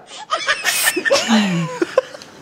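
Several people laughing in short outbursts, with a brief sharp breathy burst about a second in.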